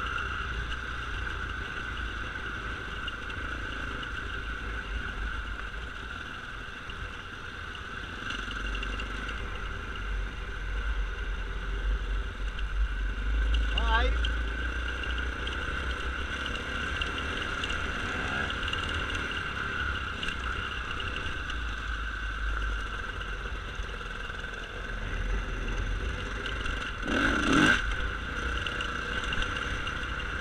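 Off-road dirt bike engine running while riding over rough ground, heard from the rider's own camera with a heavy wind rumble on the microphone. The engine revs up briefly about halfway through, and a louder burst comes near the end.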